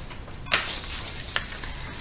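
Faint steady hiss of a close-miked voice recording during a pause in speech, with a sharp click about half a second in followed by a brief breathy rush, and a smaller click a little later.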